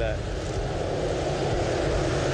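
A steady engine drone over a low rumble, with no clear rise or fall.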